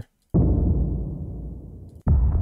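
A cinematic trailer sub boom sample: one sudden, deep, low boom about a third of a second in, fading away steadily over the next second and a half.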